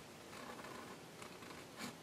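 Felt-tip marker rubbing over a canvas sticker: faint scratchy colouring strokes, one slightly louder near the end.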